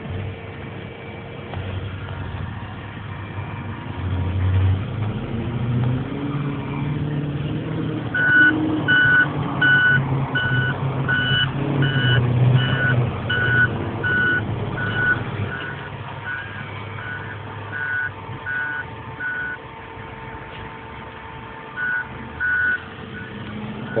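Truck engine running under load, heard from inside the cab, swelling for several seconds. From about a third of the way in, a reversing alarm beeps steadily, about three beeps every two seconds, pauses, then gives two more beeps near the end.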